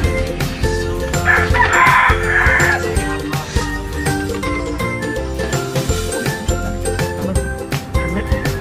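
Background music with a steady beat, and a rooster crowing once over it, a call of about a second and a half starting just over a second in.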